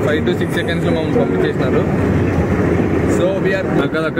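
A man talking inside a moving car's cabin, over the steady low drone of the car's engine and road noise.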